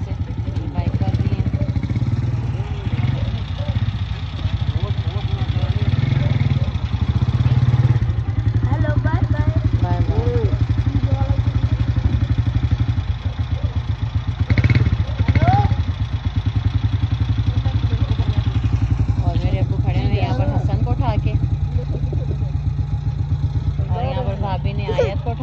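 A vehicle engine idling steadily close by, with people talking in the background.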